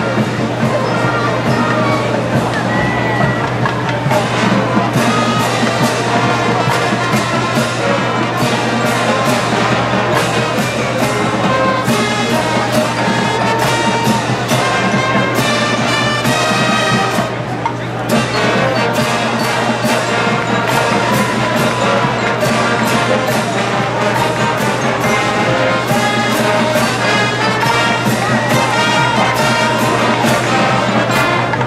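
Marching band playing: brass (trumpets and trombones) over drums keeping a steady beat. A little past halfway the sound briefly thins to a quick run of drum strokes, then the full band comes back in.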